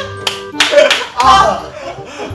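Young men shouting and laughing, with a few sharp hand claps, over steady background music.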